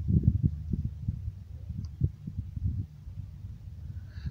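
Wind buffeting the microphone on an open hilltop: an uneven low rumble that swells and dips in gusts, with a couple of stronger thumps.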